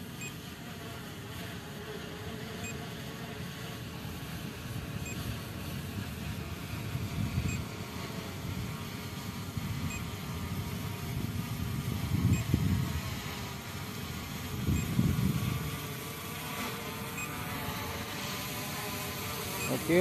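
SJRC F11S Pro 4K quadcopter's propellers humming steadily as the drone descends to land, with a few low rumbles now and then.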